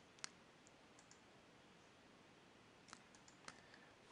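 Faint computer mouse clicks over near silence: one sharper click about a quarter second in, and a few small clicks near the end.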